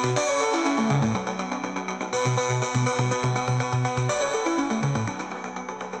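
Experimental electronic music track: a synthesizer bass note pulsing about four times a second, broken twice by a stepwise falling run of notes, once about half a second in and again after about four seconds.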